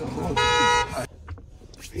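A car horn gives one short, steady honk of about half a second, then cuts off abruptly.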